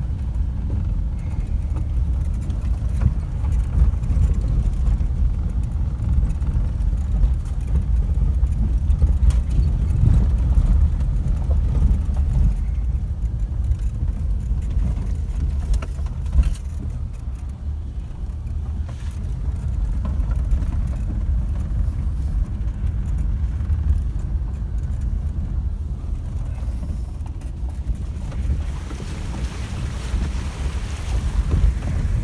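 Four-wheel-drive vehicle driving along a rough dirt track, heard from inside the cabin: a steady low rumble with a few knocks from the bumps.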